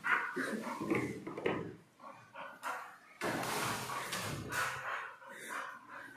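A yellow Labrador barking in rough spells, at the start and again about three seconds in.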